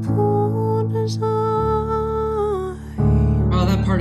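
A slow, soft song: a woman's voice holding long notes over piano accompaniment, with a fuller, deeper chord coming in about three seconds in.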